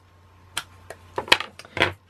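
A handful of short, sharp plastic clicks and taps, the loudest about a second and a half in: a Memento ink pad in its plastic case being handled and dabbed onto a clear-mounted rubber stamp to ink it.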